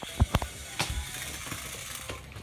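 A handful of short clicks and knocks in the first second, then only a faint steady background.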